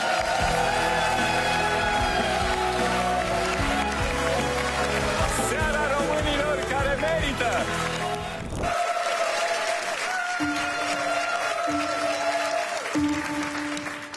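Audience applause and cheering over the loud closing bars of a song's backing track. About nine seconds in, this cuts off abruptly and quieter music of long held notes takes over.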